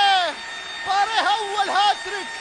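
Only speech: a football commentator shouting excitedly in Arabic, with long drawn-out vowels, celebrating a goal.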